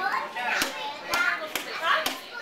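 Children's voices chattering and calling out, not clearly worded, with a few short clicks.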